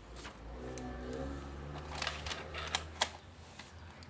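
Faint taps and rustles of a pen and notebook being handled, over a low hum that rises slightly in pitch and fades out after a couple of seconds.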